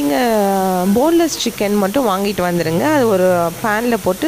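Speech: a person talking, with no other sound standing out.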